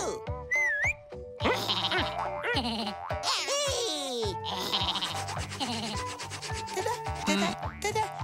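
Cartoon soundtrack: light background music with a steady beat under squeaky, wordless cartoon character voices and comic sound effects, including a short sliding whistle-like tone about half a second in.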